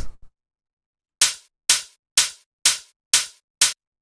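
Soloed electronic tech house hi-hat, built from three layered samples, playing six short crisp hits at an even pace of about two a second, starting about a second in.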